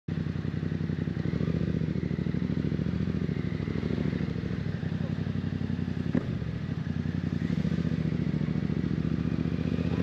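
Yamaha Tracer 7's 689 cc parallel-twin engine idling steadily, with one sharp click about six seconds in.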